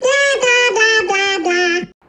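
A high-pitched, childlike cartoon voice sings a short phrase of about five or six notes, each stepping lower in pitch, then cuts off abruptly near the end.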